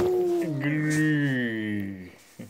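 An adult's drawn-out, playful 'acha', one long call sliding slowly down in pitch for about two seconds before fading out.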